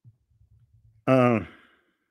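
A man's short voiced sigh, falling in pitch, about a second in, preceded by faint low rumbles.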